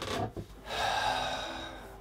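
A man drawing an audible breath in, lasting about a second, just before he starts to speak.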